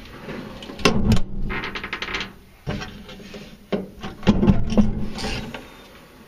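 Pickup truck toolbox lid being lowered and raised on its hinges: a run of scraping and rubbing with sharp knocks about a second in and again, loudest, near the end.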